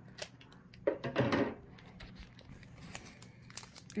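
Scissors snipping across the top of a foil Pokémon booster pack, with the wrapper crinkling; the loudest burst comes about a second in.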